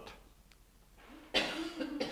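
Near silence in a small room, then about a second and a half in a person coughs once, a sudden rough burst that trails into a short low voiced sound.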